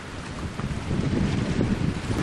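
Wind buffeting the microphone in a low, gusty rumble that grows louder about half a second in.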